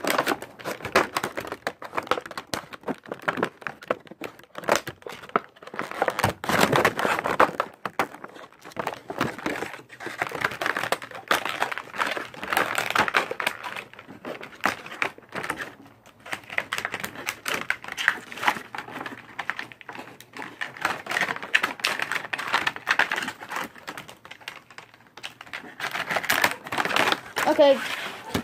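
Plastic packaging crinkling and crackling as it is handled and pulled apart to free a figure, a dense, irregular run of small clicks and rustles that comes and goes in waves.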